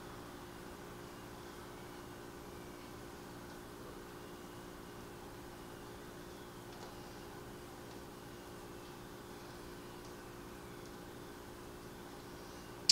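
Steady faint hum with an even hiss: room tone with no distinct event.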